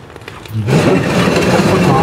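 A winch on its sliding carriage is pushed along the carriage rail on the trailer's aluminium floor: a loud, steady scraping rumble that starts about half a second in and carries on for a couple of seconds.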